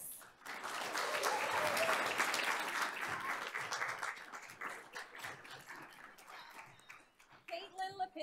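Applause from a small group clapping, starting about half a second in, strongest over the next couple of seconds and then gradually dying away.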